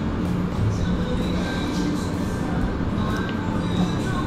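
Steady low hum and rumble of background machinery, with a faint steady high whine over it and a couple of light clicks.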